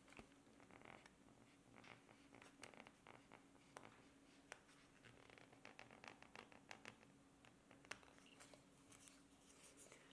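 Faint scratching and small irregular clicks of a carving knife cutting a decorative line along the handle of a wooden spoon.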